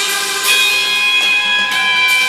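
Live rock band playing an instrumental passage: electric guitar, bass and drums with sustained held notes and cymbal crashes about half a second in and again near the end.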